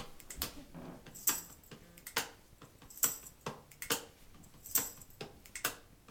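Regular ticking, one sharp click a little under every second, counting in the song: a metronome-style count-in click.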